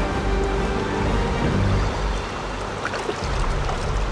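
Steady roar of the fast-flowing Litza river's rapids close by.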